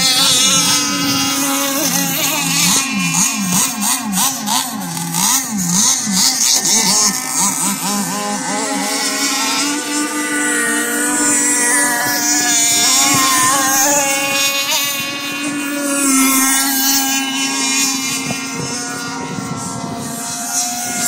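Several nitro RC racing boats' small two-stroke glow engines running at high revs, their tones overlapping. The pitches waver and swoop up and down as the boats pass and turn around the buoys, settling steadier in the second half.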